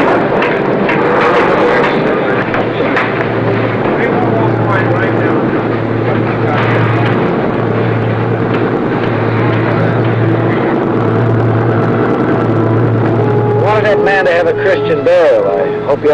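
Indistinct voices over a low throb that pulses about once a second, with clearer voice-like calls near the end.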